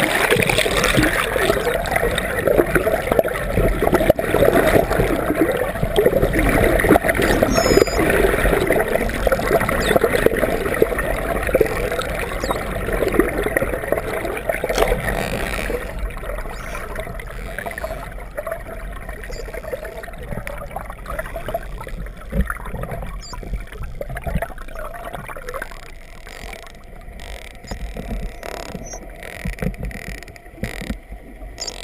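Underwater rush of water and bubbles against an underwater camera, loud for the first half and easing off after about sixteen seconds. A few faint clicks come in the last few seconds.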